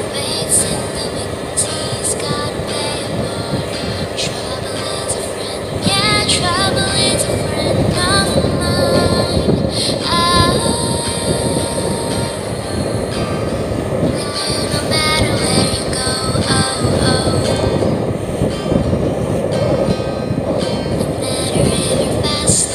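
Motorboat engine running under way, with a steady rush of wind and water that grows louder about six seconds in. Music with singing plays over it.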